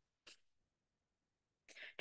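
Near silence in a pause between spoken phrases, with a brief faint breath sound about a quarter second in and a quick intake of breath just before speech resumes at the end.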